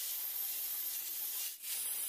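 A hand rubbing down the steel of a welded angle-iron frame, a steady hiss that breaks off for a moment about one and a half seconds in.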